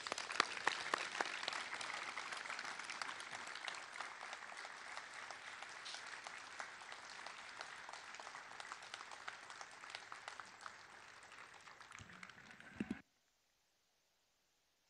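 Audience applauding: many hands clapping, fullest at the start and slowly thinning, then cut off abruptly about a second before the end.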